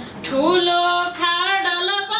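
A woman singing a Nepali poem unaccompanied, in a slow melody with held, wavering notes. After a brief breath at the start, her voice slides up into the next line.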